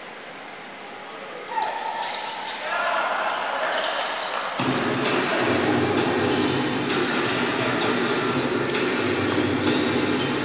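Indoor basketball game sound: a ball bouncing on the hardwood court amid voices echoing in the arena. It grows louder about a second and a half in and again just before halfway.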